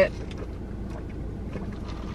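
Steady low rumble of a car's cabin background, with a few faint sips through a plastic cup's straw at the start.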